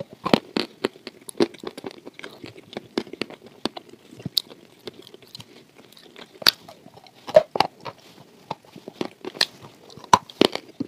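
Close-miked biting and chewing of milk-soaked waffle: an irregular run of small, sharp mouth clicks and smacks, loudest a little past the middle.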